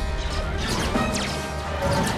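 Animated film soundtrack: loud music mixed with crash sound effects, and a few quick falling pitch sweeps about halfway through.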